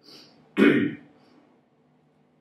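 A man clears his throat once, sharply, about half a second in, just after a short intake of breath.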